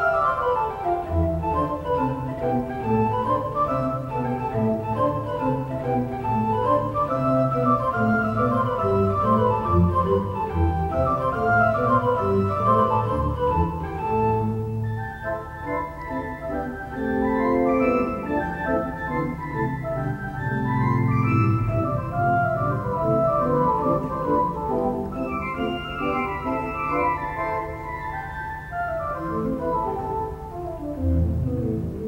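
Pipe organ played with fast scale runs that sweep down and back up again and again over a held low bass note.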